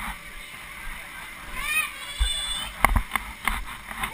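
Bouncing inside an inflatable bouncy castle: dull thumps and the rub and flap of vinyl, with a child's brief high call about halfway through and a few sharp knocks in the second half.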